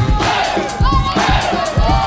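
Loud dance music with a heavy, steady beat, with a crowd shouting and cheering over it.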